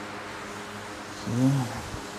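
A man's short wordless vocal sound, a rising-then-falling "hmm", about one and a half seconds in, over a faint steady hum in a large room.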